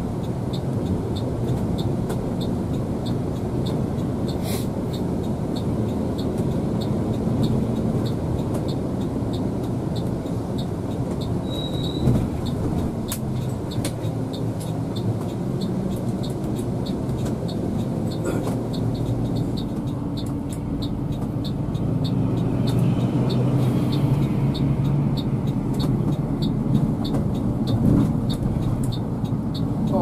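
Cabin noise of a Gunung Harta tri-axle (tronton) coach under way: a steady engine and road rumble that grows a little louder past the middle, with a regular high ticking about three times a second.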